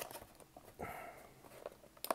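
Faint handling of a cardboard card box, with a few light clicks and scrapes as the display lid is pushed and folded. A short spoken 'oh' comes just under a second in.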